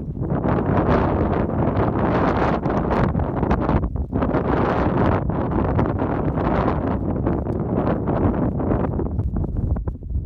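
Gusty wind buffeting the microphone on an exposed ridge, a loud rushing that swells and dips without letting up.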